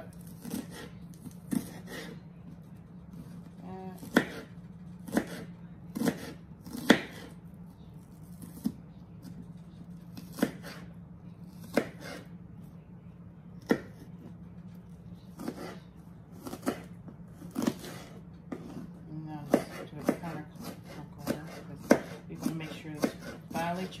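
Kitchen knife chopping an onion on a cutting board: sharp, separate knocks of the blade meeting the board, roughly one a second, coming closer together near the end. A low steady hum runs underneath.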